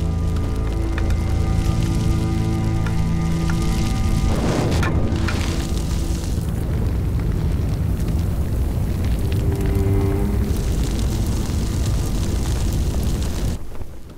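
Dramatic film score with sustained tones, mixed with the rushing noise of a large fire catching and burning through a wooden building. There is a sudden surge about four and a half seconds in, and the sound cuts off sharply near the end.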